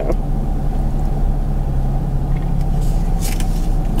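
Car engine running with a steady low hum, heard from inside the cabin.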